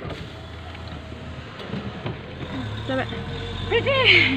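Car cabin noise: the steady low rumble of the car, with a deeper drone coming in about three seconds in, and short bits of voices over it near the end.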